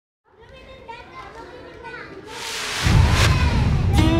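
Children's voices chattering, fading in from silence and growing louder; about two and a half seconds in, a loud rushing noise with a deep rumble swells up over them.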